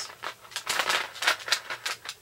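Rapid crisp rustling and clicking from a carded necklace-and-earring set and a chiffon top being handled, the beads and card rattling, busiest in the second half.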